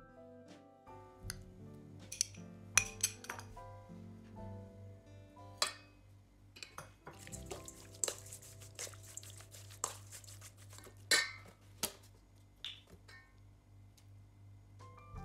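A metal spoon clinking and scraping against a stainless steel mixing bowl while raw chicken pieces are stirred with spices, in many sharp irregular clinks, loudest about three seconds in and again near eleven seconds. Soft instrumental music plays underneath.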